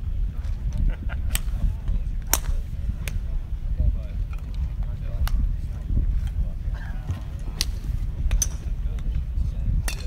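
Sharp clicks of golf clubs striking balls on a driving range, about seven scattered strikes over a steady low rumble of wind on the microphone.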